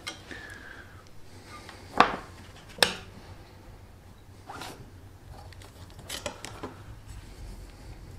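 Workbench handling: two sharp knocks a little under a second apart about two seconds in, then quieter rasping as stencil tape is peeled off a steel knife blade, loudest between six and seven seconds in.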